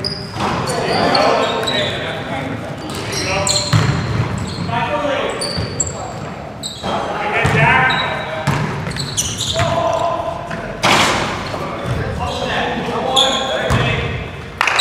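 Live basketball play in a reverberant gym: players' voices calling out indistinctly, sneakers squeaking in short high chirps on the hardwood floor, and the ball bouncing. A sharp loud knock comes about eleven seconds in.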